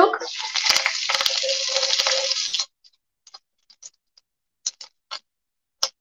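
Chopped leafy green vegetables dropped into hot oil in a pan, sizzling loudly. The sizzle stops suddenly about two and a half seconds in, followed by a few faint light clicks.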